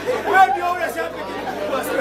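Speech: several voices talking over one another.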